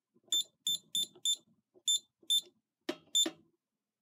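Scantronic SC800 alarm keypad giving a short high beep for each key pressed: seven beeps at an uneven typing pace as a user code plus star, nine, pound is entered, the panel's trouble-silence sequence. A single click sounds just before the last beep.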